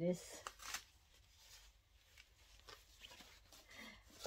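Rustling and crinkling as a handbag with plastic-wrapped handles is pulled out of a cloth dust bag: a scatter of short, faint crackles.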